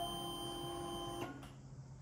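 Electric fuel pump of a fuel-injected BSA Gold Star 650 priming as the ignition is switched on: a steady whine that cuts off a little over a second in.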